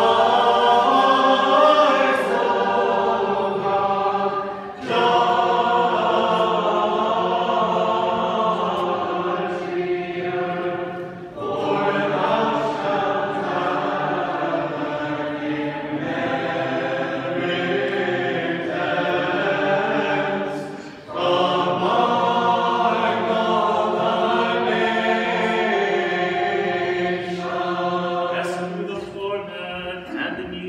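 Mixed choir of men's and women's voices singing Orthodox liturgical chant a cappella, in long held phrases with short breaks between them about every six to ten seconds.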